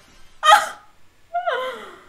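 Two shocked gasps from a woman: a sharp, loud intake about half a second in, then a shorter voiced 'oh' that falls in pitch about a second and a half in.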